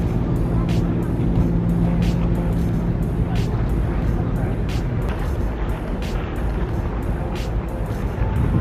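Background music with a steady beat, over a continuous low rumbling noise.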